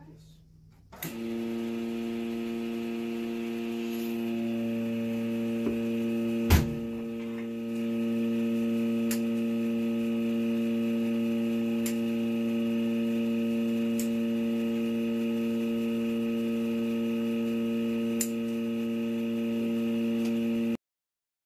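A loud, steady electrical hum starts abruptly about a second in and holds one unchanging pitch. A few light clicks and one sharper knock about six seconds in sound over it.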